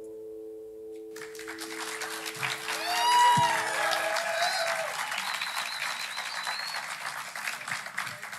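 Audience applauding, starting about a second in, with a cheer about three seconds in. The song's final held note rings under it and fades out about four seconds in.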